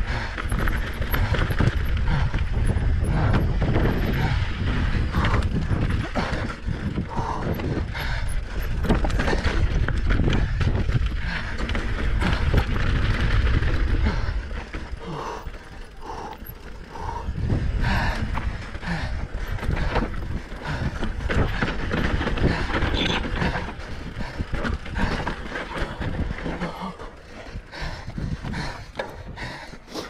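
Mountain bike descending a rocky dirt trail: a steady rumble of tyres over stones and wind on the mic, with the chain and frame rattling and the rear hub ratcheting in quick clicks. It eases briefly about halfway through and again near the end.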